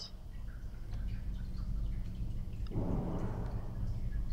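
Plastic hose being pulled off the air-valve fitting on a manometer board: a few faint clicks, then a short rustling scrape about three seconds in, over a steady low hum.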